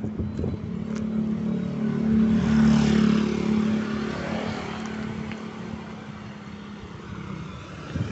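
A motorcycle passing close by: its engine grows louder, is loudest about three seconds in, then fades as it rides away. Other road traffic runs underneath.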